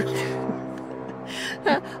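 A woman laughing breathlessly in short gasps over a steady low hum.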